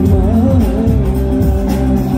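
Live band music played loud through a large PA system, with a singer's voice carrying a wavering melody over a heavy bass line.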